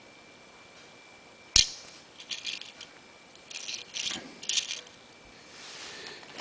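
Hot Wheels die-cast toy cars being handled: one sharp click about a second and a half in, then two short runs of small clicks and rattles as the cars are moved about.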